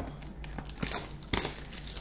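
Plastic shrink wrap on a trading-card box crinkling as hands grip and turn the box, with a couple of sharper crackles in the middle.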